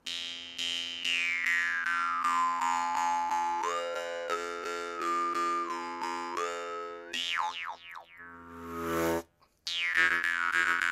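Jaw harp played with rapid, even plucks over a steady drone, the mouth shaping a melody of overtones that glides down, steps up and back down, then sweeps quickly. Near the end it gives a brief hiss and stops for a moment before the twang starts again.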